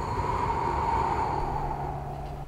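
A long breathy whoosh of blowing, like wind, swelling in the middle and easing off near the end. A faint low steady hum joins in the second half.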